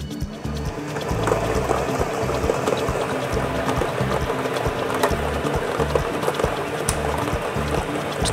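Plastic lottery balls clattering and tumbling in the clear drum of a lottery drawing machine as it mixes, the rattle building up about a second in, over background music.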